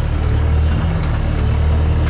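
Skid-steer loader's diesel engine running steadily under the operator's seat, heard from inside the cab, as the machine drives down the ramps off a car-hauler trailer.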